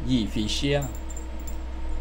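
Silver coin pendants on a Hmong embroidered vest jingling against each other as the wearer moves, with a man's voice at the start and a low steady hum underneath.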